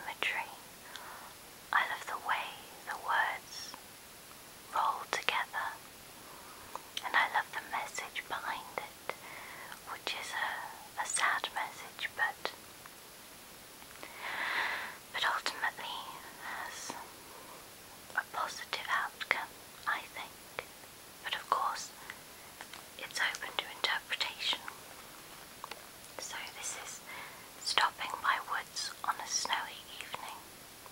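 Whispered speech: a woman whispering close to the microphone in short phrases with brief pauses, over a faint steady hiss.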